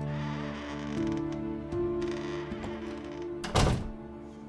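A door opening and then shutting with a thud about three and a half seconds in, over soft background music with sustained tones.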